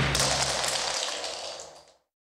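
A wash of hissing noise that fades away to silence near the end.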